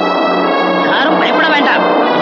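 Film background score with sustained organ-like chords, and wavering, shaky-pitched cries laid over it through the middle.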